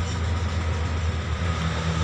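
Steady low hum with an even rushing noise behind it; a second, slightly higher steady tone joins about one and a half seconds in.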